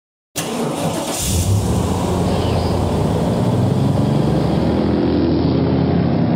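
Truck engine sound effect running steadily, starting abruptly a moment in, with a brief hiss about a second in.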